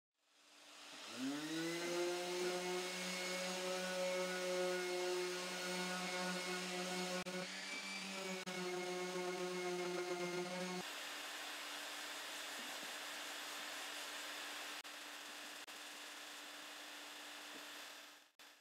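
RIDGID 5-inch random orbit sander starting up, its whine rising in pitch, then running steadily while smoothing the edges of a pine painting panel, its pitch dipping briefly near the middle. Its whine stops about eleven seconds in, leaving a quieter steady hiss and hum.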